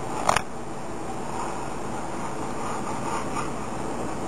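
A kitchen knife cutting through a piece of tuna belly into a wooden cutting board, one short sharp knock of the blade on the board just after the start, over a steady background hum.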